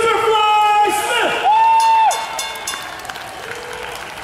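A ring announcer's voice over the arena PA, stretching words out into long held notes, with the crowd cheering and applauding underneath. The voice stops a little after two seconds in, leaving crowd noise.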